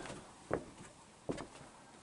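Two soft footsteps on a wooden deck, about a second apart.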